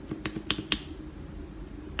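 Three quick clicks of a DJI Osmo Mobile gimbal's trigger button, about a quarter second apart: the triple press that switches the phone to its other camera.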